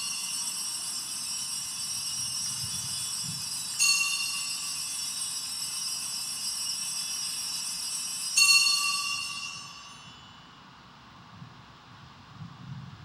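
Altar bell rung at the elevation of the consecrated host: a high, bright ringing that sounds again about four seconds in and once more about eight seconds in, each ring held a few seconds, then dying away near the end.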